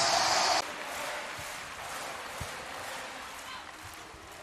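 Arena crowd noise: loud cheering for about half a second, cut off abruptly, then a lower steady crowd din.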